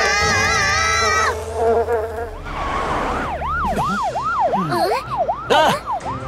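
Cartoon sound effects: a swarm of bugs buzzing for the first second or so, then a police siren wailing up and down in quick cycles, about two to three a second, from about halfway through.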